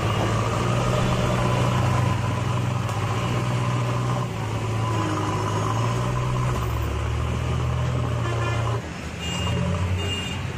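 JCB backhoe loader's diesel engine running steadily with a low drone. The drone drops off about nine seconds in.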